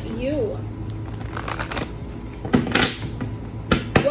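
A deck of tarot cards being shuffled by hand, the cards rustling and sliding against each other, with a few sharper snaps of the cards late on.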